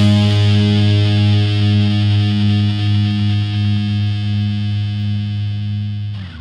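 Rock intro music: a single distorted electric guitar chord held and ringing out, slowly dying away.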